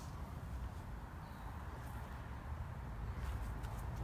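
Wind rumbling on the microphone, with a few faint light clicks in the last second.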